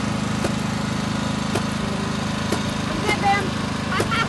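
The small engine of a paintball mini tank running steadily, with a few sharp pops about a second apart.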